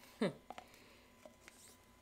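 A short falling hum from a woman's voice, then a few faint light clicks and taps of a plastic powder scoop and shaker bottle being handled.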